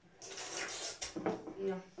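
A boy's voice in a small room, briefly preceded by a short hiss.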